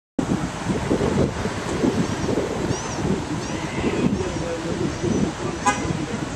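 Wind buffeting the microphone over seaside street ambience, with a few faint high bird chirps in the middle and a short, pitched honk near the end.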